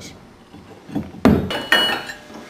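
Heavy forged iron brake-rigging parts clanking against each other as they are picked up and handled: a loud clank a little over a second in, then a second one, each followed by a metallic ring.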